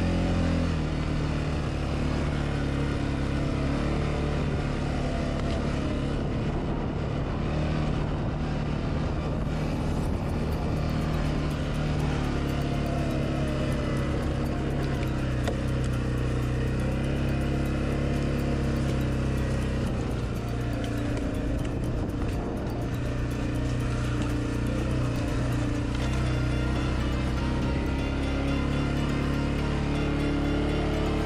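CF Moto 520L ATV's single-cylinder four-stroke engine running steadily as the quad drives along, its pitch rising and falling slightly with the throttle.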